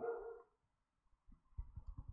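A short hummed voice sound fading out, then after a brief silence a run of faint, rapid low taps of computer keys and mouse being worked.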